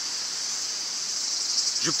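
A steady, high-pitched chorus of insects singing, with a man's voice coming in near the end.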